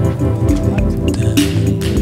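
A recorded indie cover song playing: steady bass and held pitched tones with sharp percussive hits, about three in two seconds.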